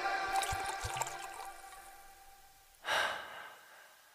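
The last notes of background music fading out over about two seconds after a sudden cut, followed by a brief, soft rush of noise about three seconds in.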